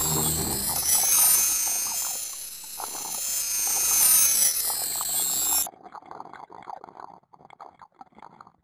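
Shimmering, chime-like sparkle sound effect, a glittering wash of high tones, that cuts off suddenly about five and a half seconds in. Faint scattered crackles follow.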